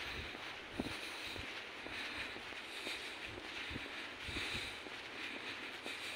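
Soft, irregular footsteps on a paved path over a steady outdoor background hiss and low rumble.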